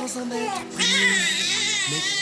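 Newborn baby crying, a loud, high, wavering cry that starts about a second in, over soft background music.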